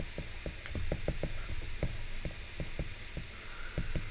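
A stylus tip tapping and scraping on an iPad's glass screen as words are handwritten: a quick, irregular run of light taps, about five a second.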